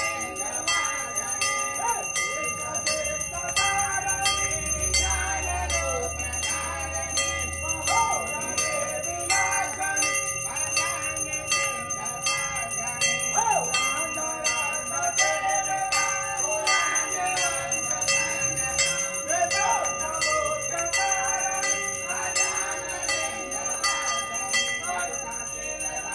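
Brass temple bell rung by hand over and over in a steady rhythm during aarti, its ringing tones hanging on between strokes, with voices singing the aarti underneath.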